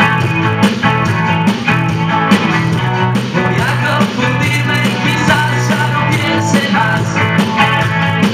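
Rock band playing live at full volume: electric guitars, bass and drums over a steady beat.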